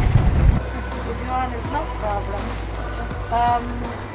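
Wind and boat noise on the microphone of a small boat on open water, cut off abruptly about half a second in. Then a steady low hum runs under quieter voices speaking at intervals.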